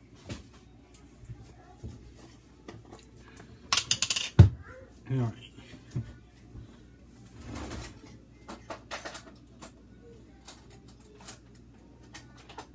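Things being handled inside a refrigerator: scattered clicks and knocks, with a loud clatter about four seconds in.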